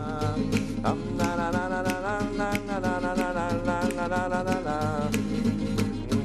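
Nylon-string classical guitar strummed in a steady rhythm, about two strokes a second, with a man's voice singing the melody over it in long held notes.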